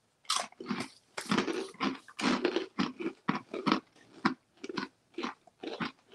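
Two people biting into and chewing crunchy pretzel bites: a rapid, irregular run of crisp crunches that thins out toward the end.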